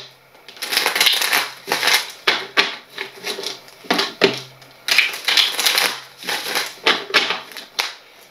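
A deck of tarot cards being shuffled by hand: a run of quick riffling, slapping bursts, about two or three a second.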